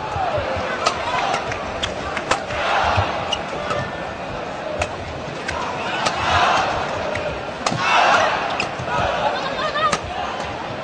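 Arena crowd shouting and cheering in swells during a badminton rally, with sharp racket strikes on the shuttlecock at uneven intervals.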